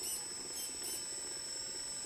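Model truck's hydraulic pump running steadily with a faint high-pitched whine and a low hum, powering the truck's hydraulic stand legs.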